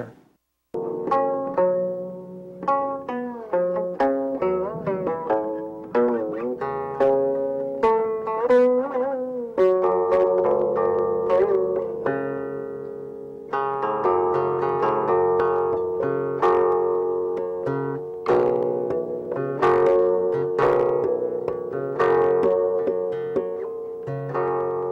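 Silk-string guqin (Chinese seven-string zither) playing a slow melody reconstructed from 15th–16th-century Chinese tablature. It has single plucked notes that ring and fade, with sliding and wavering pitches between some of them. The playing enters after a brief gap about half a second in and grows fuller after about ten seconds.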